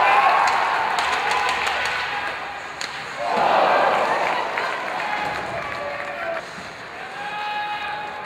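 Ice hockey arena sound: voices and crowd noise over the rink, with sharp clicks and knocks of sticks and puck. The noise swells loud about three seconds in as the play reaches the net.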